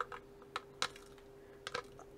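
About five light, separate clicks of small plastic diamond-painting drills sliding off a 3D-printed drill tray into their container, the last two close together near the end, over a faint steady hum.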